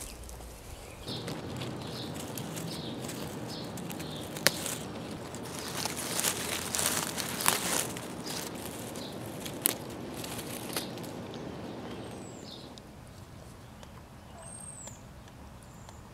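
Hands rustling through strawberry plants and plastic bird netting over crackling dry leaf mulch while strawberries are picked, with a few sharp clicks along the way. It quietens toward the end, where two short high chirps are heard.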